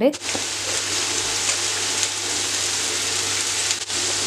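Sliced onions sizzling in hot oil in a frying pan: a steady frying hiss that starts as the onions go in, with a brief dip near the end.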